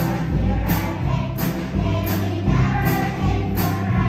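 Children's choir singing a slow song to acoustic guitar, with a light percussion tick about every three-quarters of a second.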